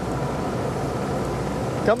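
Steady noise of a boat's engine idling: an even hiss with a faint constant hum underneath, unchanging throughout.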